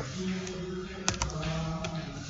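A few sharp computer keyboard key clicks, two of them close together just past a second in, over a faint steady low hum.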